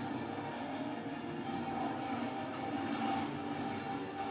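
Action-film soundtrack playing through room speakers: a dense steady rumble like heavy vehicles under music, with a held tone coming in about a second and a half in.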